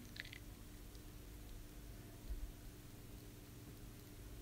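Faint room tone with a low steady hum, and a few faint short ticks just after the start.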